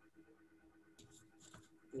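Near silence: room tone with a faint steady hum and a few faint clicks.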